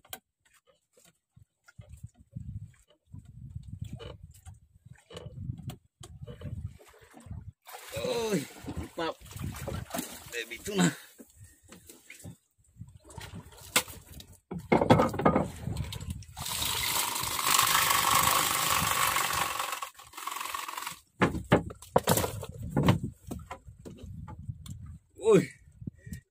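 A hooked tuna being hauled in by hand line and landed in a small boat: scattered knocks and thumps, a few splashes, and a loud rushing noise lasting a few seconds just past the middle.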